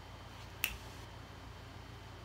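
A single sharp finger snap a little over half a second in, over a low steady room hum, the snap of someone trying to recall an answer.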